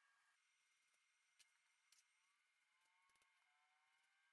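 Near silence, with a few faint snips of scissors trimming hair, the first about a second and a half in.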